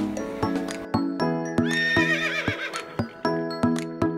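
Background music with evenly paced struck notes, and a horse whinnying once about one and a half seconds in, a quavering call lasting about a second.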